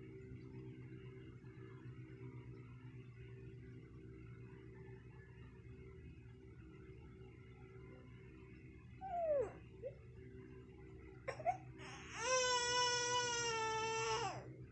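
A baby gives a short falling whimper about nine seconds in, then a long, steady cry of about two seconds near the end, over a faint steady low hum.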